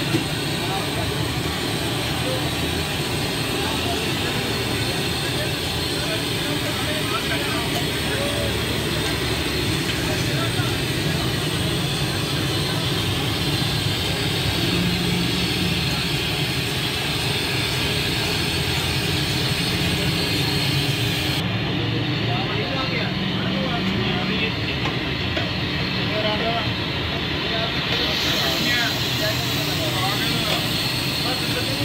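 Steady roar of a busy roadside street stall, with the background chatter of a crowd and street traffic.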